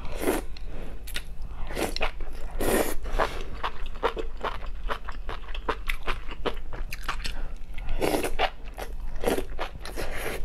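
Close-up eating sounds of a person biting and chewing enoki mushrooms from a chili-oil broth: a quick, irregular run of crisp chewing clicks with several louder bites.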